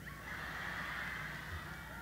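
Crowd noise from a large audience: a swell of cheering and laughter that comes up just after the start and dies away after about a second and a half.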